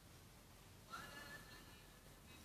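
Near silence: room tone, with one faint, short, high squeal that rises and then holds for about half a second, about a second in.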